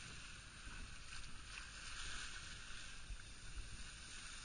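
Steady rush of wind and water from a boat under way at sea, with a low, uneven rumble underneath and no engine or voice standing out.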